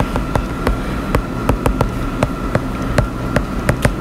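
Stylus tip tapping and clicking against a tablet screen while handwriting an equation, with a series of irregular sharp ticks, over a steady low room hum.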